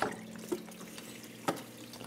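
Water trickling and dripping in an Aerogarden Bounty Elite hydroponic garden, over a steady low hum, with two faint clicks about half a second and a second and a half in.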